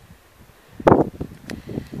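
Wind buffeting the camera microphone, with a loud gust about a second in followed by a few light knocks and rustles.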